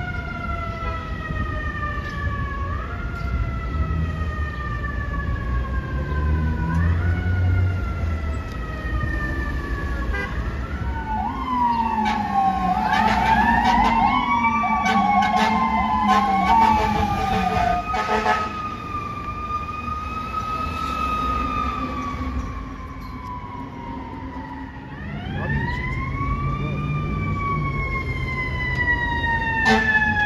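Sirens of responding FDNY emergency vehicles. Early on, one siren repeatedly winds up quickly and slides slowly back down. In the middle, a second siren overlaps with it, and near the end a siren rises and falls again.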